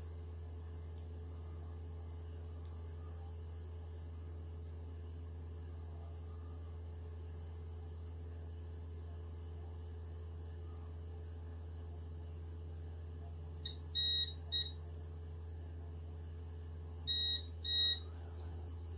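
Elegoo Mars resin 3D printer's buzzer beeping during a levelling routine: a quick pair of high beeps late on, then two longer beeps near the end, over a steady low hum.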